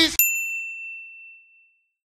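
A single high bell ding, struck just after the start and ringing out, fading away over about a second and a half.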